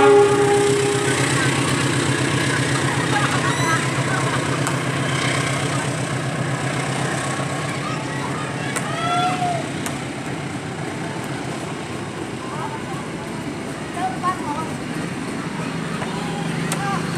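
Passenger carriages of a train rolling past at speed, a steady rumble and rattle of steel wheels on the rails, opening with a short loud held tone in the first second.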